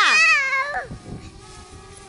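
A high-pitched squealing cry of a voice, rising then falling and wavering, lasting about the first second and then dying away.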